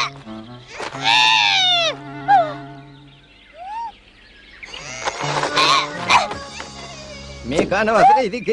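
Cartoon soundtrack: held background music notes under a loud character cry that rises and falls in pitch about a second in, followed by two short sliding tones, more voicing around the middle, and a voice starting near the end.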